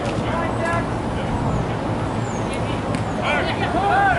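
Indistinct voices calling out across a soccer pitch during play, growing louder from about three seconds in, over a steady low background rumble.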